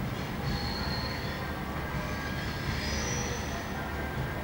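V/Line VLocity diesel multiple unit rolling round a curve, its wheels squealing in thin high tones that come and go over the low rumble of its diesel engines.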